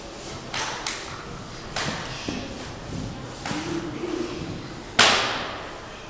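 Strikes landing on a karateka's body and gi during a Sanchin kitae conditioning test: several sharp slaps and thumps, the loudest about five seconds in, echoing in a large hall.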